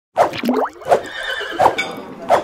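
Cartoon sound effects for an animated intro: three sharp hits with sliding, wavering tones between them.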